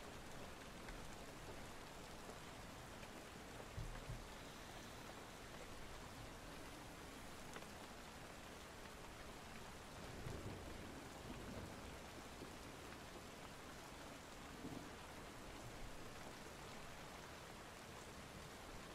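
Steady rain falling, a faint even hiss, with a few brief soft low rumbles scattered through.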